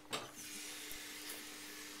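Electric pottery wheel turning with a faint steady hum. From just after the start, the spinning textured clay vase rubs against something, giving a steady, even scraping hiss.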